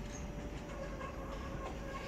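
Berlin U-Bahn train approaching at a distance: a steady whine, with higher tones joining about a second in.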